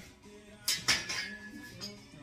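Flat metal bar stock clanking as it is lifted from other stock leaning against a wall: two sharp metallic clanks a little under a second in, followed by a brief ring.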